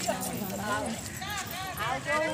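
Several women's voices at once, calling out and chanting together during an outdoor group game, with light taps or steps under them.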